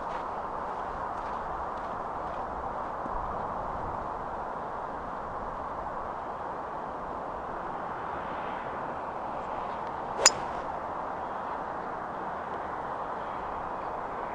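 A golf club strikes a ball off the tee once, about ten seconds in: a single sharp, ringing impact over a steady background hiss.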